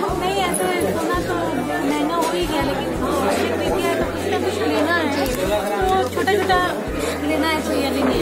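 A woman talking into a handheld microphone, with background music and other people's chatter behind her voice.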